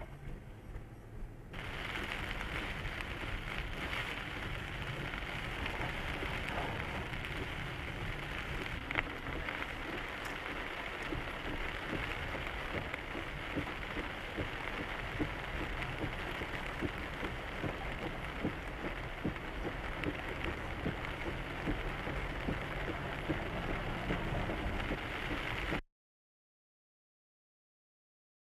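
Rain striking a car's windshield and body, heard from inside the car: a steady hiss speckled with many small drop hits. It begins abruptly about a second and a half in.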